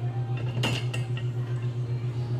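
Small metal clinks as a bolt and its washers are handled and fitted on a scooter's rear top-box bracket: a short cluster of light ringing clinks from about half a second to a second in.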